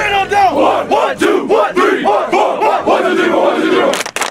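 A football team huddled together shouting and chanting, many loud male voices overlapping in a pregame battle cry.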